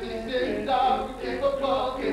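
Male a cappella group singing in close harmony without instruments, several voices holding and moving chords together.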